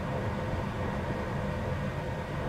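Steady low rumble inside a car cabin from the running car, with a faint steady whine above it.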